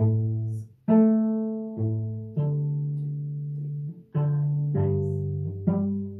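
Cello played with the bow: a short phrase of about seven notes, each starting sharply. Most are short, and one in the middle is held for about a second and a half.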